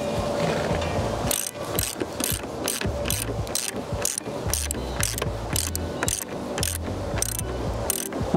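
Ratchet wrench tightening a nut down on a J-bolt through a wooden sill plate: a regular run of ratcheting clicks, about three a second, starting a second or so in.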